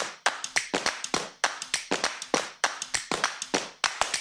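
A rapid run of sharp percussive hits, about six a second in an uneven rhythm, starting suddenly out of silence.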